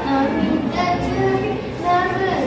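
A schoolgirl singing a melody, holding each note briefly and gliding between notes.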